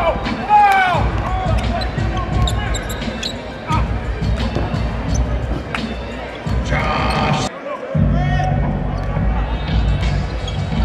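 Basketball play on a hardwood court: the ball bouncing and sneakers squeaking, the squeaks mostly in the first second, over music with a steady low beat.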